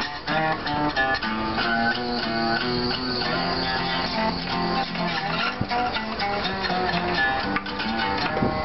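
Acoustic guitar played by hand, a continuous run of plucked notes and chords.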